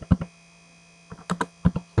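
Computer keyboard typing: three quick keystrokes at the start, a short pause, then a burst of several more keystrokes in the second half. A steady electrical mains hum runs underneath.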